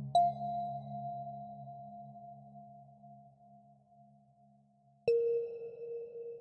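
Ambient relaxation music: a struck bell-like tone rings just after the start and fades slowly over about five seconds, then a second, lower tone is struck near the end. A low drone under the first tone fades out.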